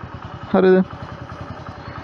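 Motorcycle engine idling with a steady, rapid even pulse while the bike stands still.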